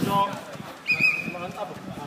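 A referee's whistle blown once, about a second in: a short, high, steady blast that tails off, calling a foul for a free kick. Players' voices are heard around it.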